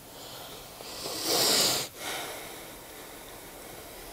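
A person's breath close to the microphone: a hissy breath that swells about a second in and stops abruptly just before two seconds, over a faint steady hiss.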